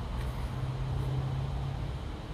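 A steady low engine-like hum over a low rumble, dropping away near the end.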